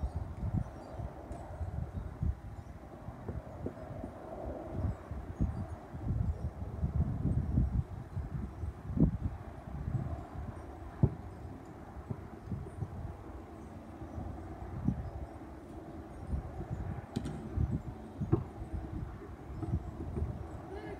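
Wind rumbling on the microphone, with a few sharp thuds from a basketball in play, the loudest about nine and eleven seconds in.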